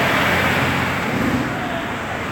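Road traffic noise: the steady rush and low rumble of a passing vehicle, easing off a little toward the end.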